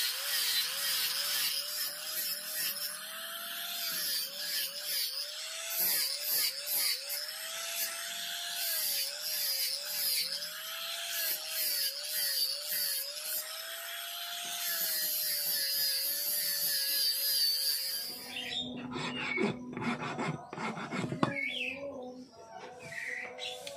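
Electric angle grinder with a sanding disc running against a badik knife handle, its motor pitch repeatedly dipping and recovering as it is pressed into the work. It stops about 18 seconds in, and a few seconds of scraping and knocking from hand work on the handle follow.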